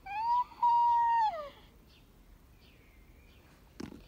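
A human voice imitating a horse's whinny: one long high call lasting about a second and a half, rising, held level, then falling away.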